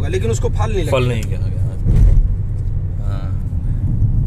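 Steady low drone of a car's engine and tyres heard from inside the cabin while driving on a highway, with a man's voice over it during the first second or so and a brief bump about two seconds in.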